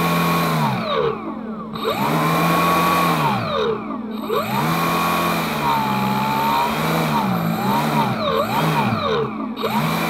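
Electric motor and air propeller of a model boat running at a fixed throttle. The whine repeatedly drops in pitch and climbs back as the transmitter's stability control cuts throttle during turns. The first dips are long and deep; later ones come quicker and shallower.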